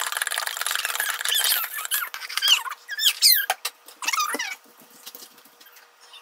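A spoon stirring fast in a mug, scraping rapidly against its sides, then giving a few high squeaks that slide up and down in pitch. It stops about two thirds of the way through.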